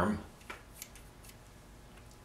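Three faint light clicks of metal sculpting tools being picked up and handled on a wooden worktable.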